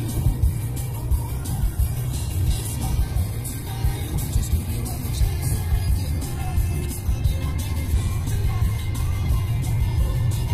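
Steady road and engine rumble inside a moving car's cabin at highway speed, with music playing faintly over it.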